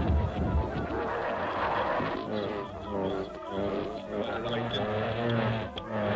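Experimental cassette tape collage: voices that cannot be made out, layered with other pitched and noisy sounds, with a dull, muffled top end. A steady low hum joins in about halfway through.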